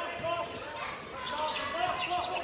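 Live basketball game sound in an arena: steady crowd noise with several short sneaker squeaks on the hardwood court.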